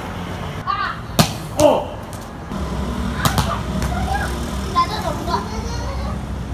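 Two sharp smacks, about two seconds apart, of a child's toy bat and ball, amid short bursts of children's voices. A low steady rumble comes in about halfway.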